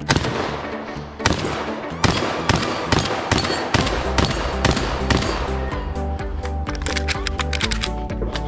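A string of shotgun shots, sharp reports coming roughly every half second to a second, over background music.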